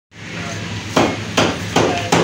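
Butcher's cleaver chopping lamb on a round wooden block: three sharp chops, about 0.4 s apart, starting about a second in.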